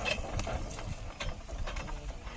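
Loaded bullock cart rolling along a dirt track: irregular clicks and rattling knocks from the cart and harness, a few a second, over a low rumble.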